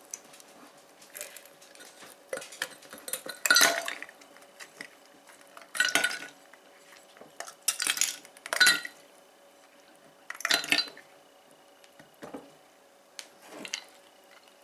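Small round ice cubes clinking against a glass measuring cup in a series of separate sharp clinks and short rattles, several leaving a brief ringing tone.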